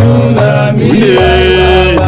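Gospel choir of male voices singing in harmony, with long held low bass notes beneath the moving melody lines.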